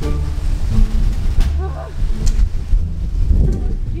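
Wind buffeting the microphone, a heavy low rumble that goes on unevenly throughout.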